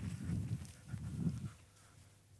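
Footsteps walking through grass, low soft thuds about two a second, fading out near the end.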